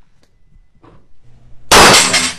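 A single handgun shot near the end, sudden and very loud, with a short smear of echo after it.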